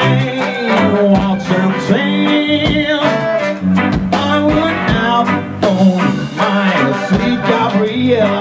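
A ska band playing live with a steady beat: electric guitar, horns, bass and drums, with a man singing into a microphone over it.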